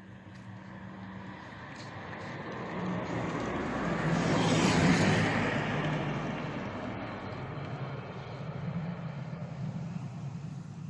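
A motor vehicle passing by: a low engine hum and rushing noise that grows louder to a peak about halfway through, then slowly fades away.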